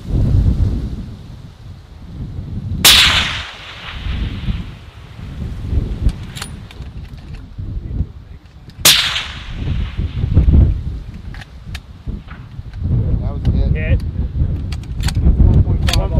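Two shots from a scoped sniper rifle fired prone at long range, about six seconds apart, each report trailing off over about a second. Wind buffets the microphone with a steady low rumble throughout.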